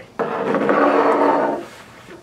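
A chair scraping across the floor for about a second and a half as it is pushed back from the table.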